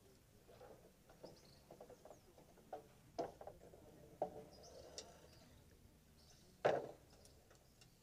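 Scattered wooden knocks and clatters of boards being laid across an open grave, the loudest one about two-thirds of the way in, with faint bird chirps.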